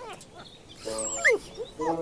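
Small white Pekingese-type dog whimpering, two short high whining calls with falling pitch, about a second in and again near the end.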